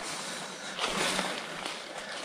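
Faint, steady rustling of footsteps through dry leaf litter and brush on a forest floor.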